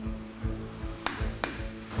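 A lump hammer striking a large metal spike being driven into timber: two sharp metallic strikes about a second in, a third of a second apart, over background music.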